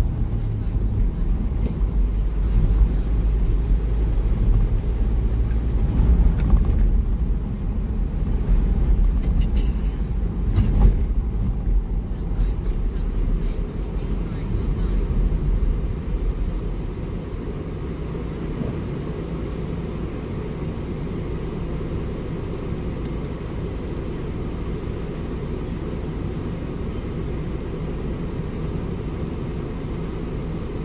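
Car road and engine noise heard from inside the cabin, a low rumble while driving. About halfway through it drops to a quieter, steady hum as the car slows and waits in traffic.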